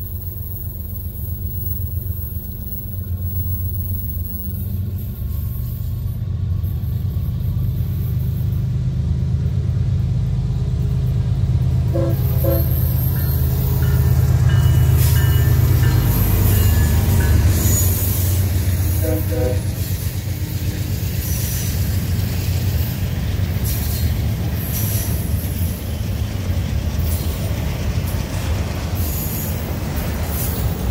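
Norfolk Southern diesel freight locomotives passing, their deep engine rumble building to its loudest as they go by. Short horn blasts sound a little before they pass and again a few seconds after. Then comes the steady rolling and clicking of double-stack container cars' wheels over the rails.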